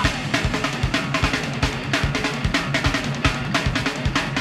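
Heavy rock track with its bass line removed: a drum kit drives fast, dense beats on bass drum and snare, with no vocals.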